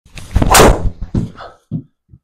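A driver striking a golf ball with a sharp crack, and the ball hitting the simulator's hanging impact screen immediately after. A few softer knocks follow about a second later.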